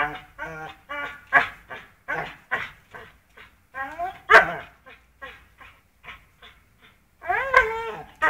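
Pit bull vocalizing while it hangs from a rope toy by its jaws: a quick series of short, pitched calls, about two a second. A louder, sharp one comes about four seconds in, and a longer call with wavering pitch near the end.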